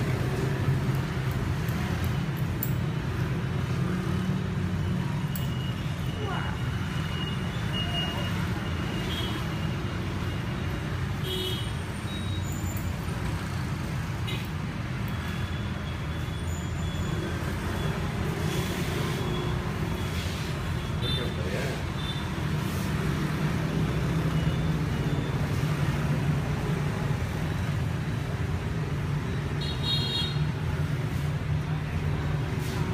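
Steady low rumble of street traffic, with faint voices in the background.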